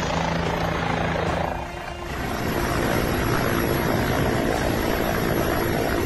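Helicopter running close by: loud, steady rotor and engine noise, with a brief dip about two seconds in.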